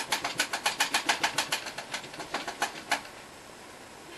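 Paintbrush dabbed rapidly against a canvas, about eight soft taps a second, then slower, scattered taps that stop a little before the end.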